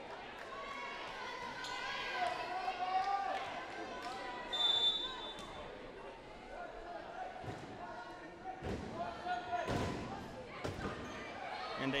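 Echoing volleyball rally in a hardwood gym: voices of players and spectators calling out, a short high whistle tone about four and a half seconds in, then sharp hand-hits on the volleyball near nine and ten seconds, the serve and the set.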